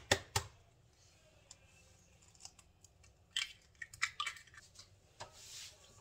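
An egg tapped sharply against the rim of a stainless steel mixing bowl: two quick clicks at the very start. Then a quiet stretch, and from about three seconds in a scatter of light clicks and knocks as the bowl and the stand mixer's tilt head are handled.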